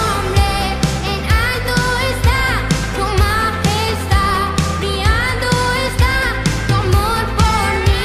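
Christian praise band playing an upbeat song: a lead voice sings over drums, bass and guitar, with a steady drum beat.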